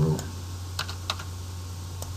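Typing on a computer keyboard: a few separate key presses as digits are typed into a form field.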